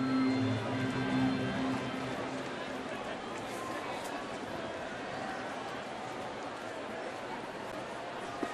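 Ballpark crowd murmur under music with held low notes, which stops about three seconds in, leaving only the steady murmur of the crowd.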